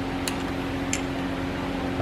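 A steady machine hum with an even tone, with two light metallic clicks of hand tools on the rocker arm valve adjusters, one early and one about a second in.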